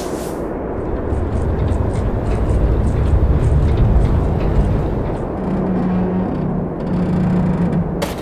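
Heavy armoured vehicle sound effect: a loud, deep engine rumble that builds toward the middle, with faint rapid ticking over it for the first few seconds and a steady low hum near the end.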